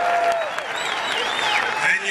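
A large crowd applauding, with voices calling out over the clapping.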